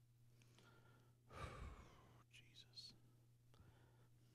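Near silence over a steady low hum, with a man's breath into a handheld microphone about a second and a half in, followed by faint whispering.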